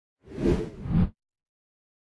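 Whoosh sound effect of an animated logo intro, swelling twice and cutting off abruptly just over a second in.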